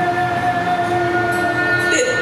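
Haegeum, Korean two-string bowed fiddles, playing long, steady held notes.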